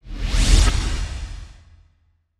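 Logo-reveal whoosh sound effect with a deep low end. It swells in fast, peaks about half a second in and fades away over the next second.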